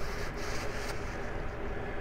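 Steady low background hum with faint handling sounds as an aluminium piston is turned over in the hands.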